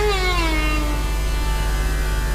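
Devotional background music: a bowed string instrument, violin-like, plays a wavering melodic line that ends on a slow falling note and fades out within the first second. A steady low hum runs underneath.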